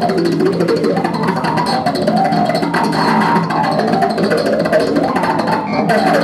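Live band music: an electric bass playing along with guitar and drums, continuous throughout.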